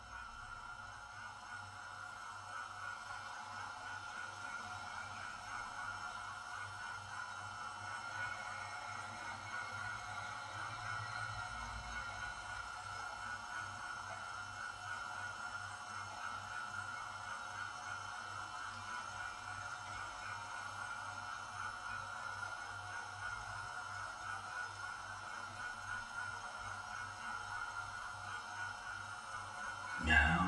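Soft, steady ambient music drone: a sustained mid-high tone held throughout, with a low pulsing underneath.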